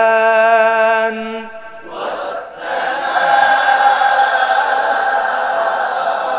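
A male qari's voice holding a long melodic vowel in tajweed Quran recitation, breaking off about a second and a half in. About two seconds in, a group of voices takes up the line together in a blurred unison chant: the class repeating the verse after the teacher.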